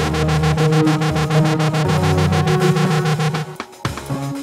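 Electronic beat playing back from an Akai MPC X sequence at 120 BPM: fast, evenly spaced drum hits over a synth bass line and held synth notes. The music thins out briefly near the end, then the bass and drums come back in.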